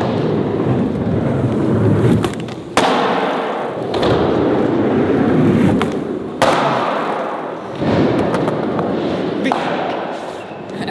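Skateboard wheels rolling on a concrete floor, broken by three sharp board impacts: about three seconds in, about six and a half seconds in, and near eight seconds in, as the board pops and lands on the stairs.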